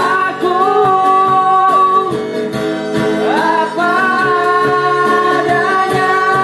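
Live acoustic band playing a pop ballad: a man singing over a strummed acoustic guitar, with a violin.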